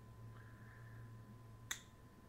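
A single sharp click about one and a half seconds in, over a faint steady hum.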